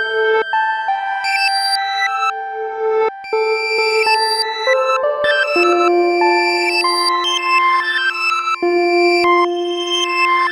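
Improvised ambient electronic music from a Max/MSP patch of comb filters, allpass filters and delay lines. Many sustained pitched tones overlap and step to new pitches every second or so, with a brief dip about three seconds in.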